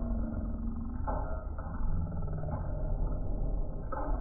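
SVS PB13 Ultra subwoofer playing a deep, rumbling low-bass passage from a film soundtrack, its large cone moving back and forth with wide excursion. The sound is heaviest in the deep bass and muffled, with nothing heard above the low mid-range.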